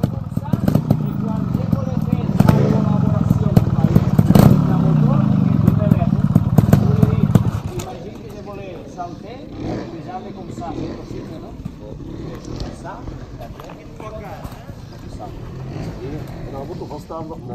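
Trials motorcycle engine running, its revs rising and falling, then cutting off suddenly about seven and a half seconds in, leaving quiet voices.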